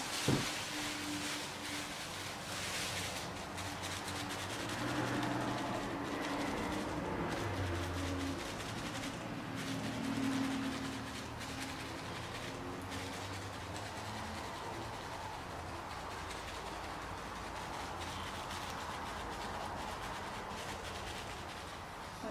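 A crumpled plastic bag is dabbed and rubbed over wet acrylic paint on a canvas. A low, steady engine-like hum runs under it through the first half and then fades.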